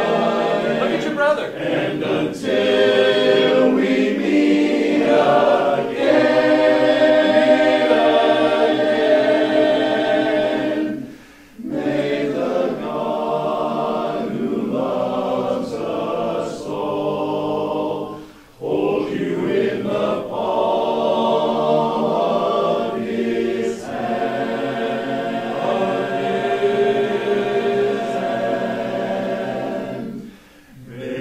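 Men's a cappella choir singing a slow song in harmony, with two short breaks between phrases about eleven and eighteen seconds in.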